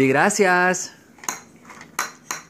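Toddlers banging on a plastic children's play table: a few sharp, clattering knocks in the second half, after a loud vocal cry at the start.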